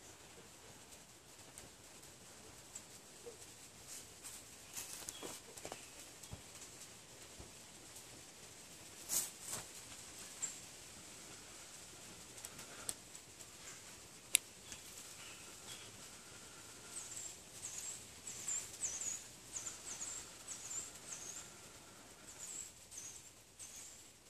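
Faint rustling and crackling of a bundle of dry pine needles being handled around a smouldering ember, with a sharp click about midway. Small birds chirp in the background in the second half.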